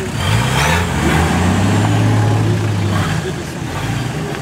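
Off-road 4x4's engine held at high revs under load, pulling the vehicle up a steep, rutted dirt bank. The revs rise about a quarter second in, hold steady, and ease off near the end.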